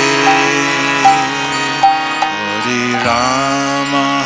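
Kirtan music: sustained harmonium tones under a male voice chanting, with a few sharp drum strokes.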